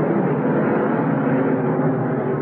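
A full field of NASCAR stock cars' V8 engines running hard together as the pack accelerates on a green-flag restart: a dense, steady drone of many engines at once, heard through old, muffled broadcast audio.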